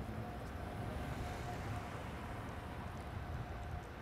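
Steady road traffic noise at a city intersection, with a faint steady hum running under it.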